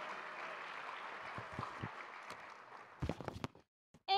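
Audience applause fading away, followed by a few scattered knocks and a short cluster of sharp knocks near the end.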